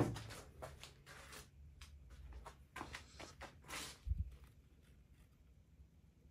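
Quiet handling sounds at a workbench as a paintbrush is picked up and brought back to the work: a sharp click at the start, scattered light rustles and taps, and a dull thump about four seconds in.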